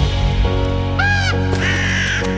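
Background music, with a crow cawing twice over it: a short call about a second in and a second, longer one just before the end.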